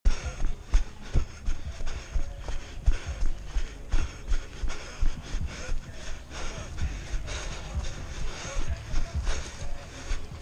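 Running footsteps on a dirt trail, thudding through a body-worn action camera about two to three times a second, with the runner's heavy breathing.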